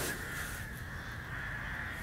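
Crows cawing faintly over a steady background hiss.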